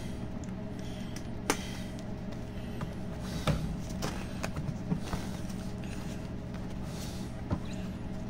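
A steady low hum with a few light clicks and knocks and soft rustling as plush toys are handled and pushed against each other.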